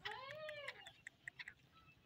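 A male black francolin (kala teetar) gives one faint call that rises and then falls in pitch, lasting under a second, followed by a few faint clicks.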